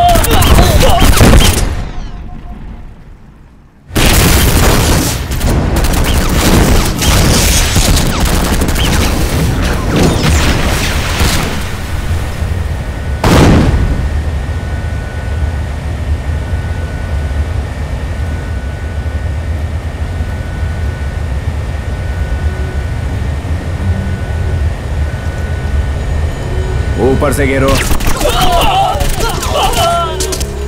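Film action soundtrack: bursts of gunfire that drop away to near silence for about two seconds, then come back loud. About thirteen seconds in there is a single heavy explosion, followed by a steady rumble with a faint, repeating high tone. Voices shout near the end.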